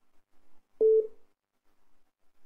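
A single short telephone beep on the call line: one steady tone lasting about a fifth of a second, about a second in.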